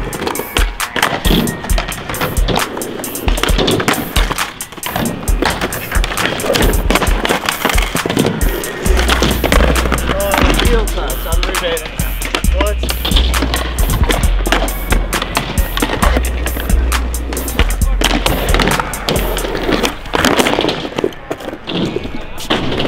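Skateboards on concrete: wheels rolling, with sharp pops and slaps of the boards on tricks and landings, over a hip-hop beat whose heavy bass comes in about nine seconds in.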